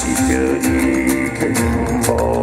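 Live music from a guitar and drum kit: an amplified acoustic guitar playing held notes over a low bass, with the drums keeping a steady beat of sharp cymbal strokes.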